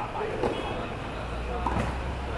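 Two sharp knocks of tennis rackets striking the ball, about half a second in and near the end, over people's voices talking.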